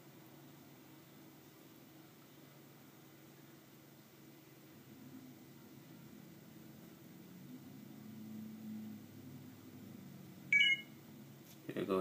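Quiet room tone, then one short electronic beep made of several tones at once, about ten and a half seconds in.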